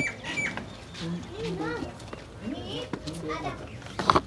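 Indistinct voices talking in short phrases, with short high chirps from small birds mixed in.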